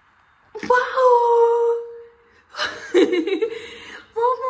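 A toddler's voice: a long held squealing note starting about half a second in, then laughing in short bursts near the end.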